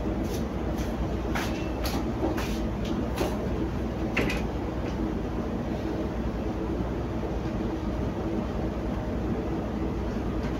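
Steady low rumble of a cargo ship's engine running under way in heavy seas, with several sharp knocks or rattles in the first four seconds.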